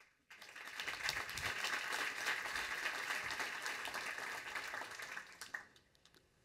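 Audience applauding. The applause swells over the first second, holds steady, and dies away about five and a half seconds in.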